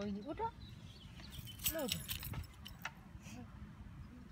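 Short voiced calls with a few sharp clinks around the middle, over a steady low rumble.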